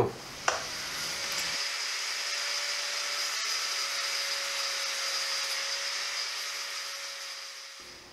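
An electric power tool running steadily at one constant pitch, starting with a click about half a second in and fading near the end.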